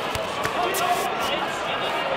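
Many voices chattering in a large hall, with a few sharp thuds in the first second from the kickboxing bout on the mats.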